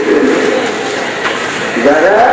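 A man's amplified sermon voice through a microphone and loudspeaker. A drawn-out chanted note tails off at the start, and a steady hiss runs underneath.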